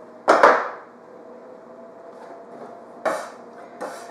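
A metal spatula scraping and knocking against the floured countertop as cut cookie dough is slid up off it: a louder short scrape about a third of a second in and a second one about three seconds in.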